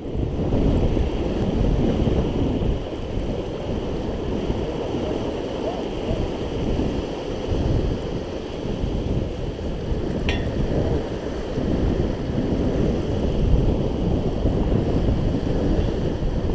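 Wind buffeting the microphone: a steady low rumbling rush, with the sound of churning harbour water mixed in.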